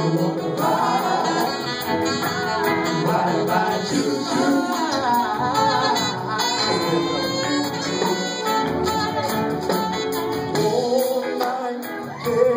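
Live funk band playing: drums, electric bass and keyboard under group singing, with a tambourine shaken along.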